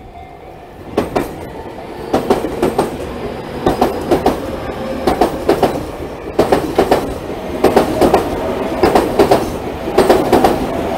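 Tobu Tojo Line electric commuter train passing a level crossing, its wheels clattering over the rail joints in paired clacks about every second and a half. The rolling noise rises sharply about a second in.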